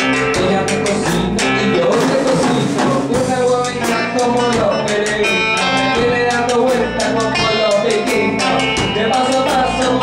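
A small band playing live: acoustic and electric guitars over a drum kit.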